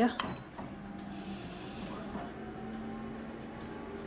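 Multifunction office copier starting a copy print run: a steady mechanical hum with a low steady tone as the print mechanism runs up.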